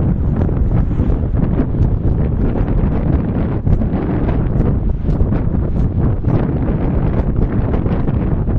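Wind buffeting the microphone: a loud, steady low rumble with rapid flutter.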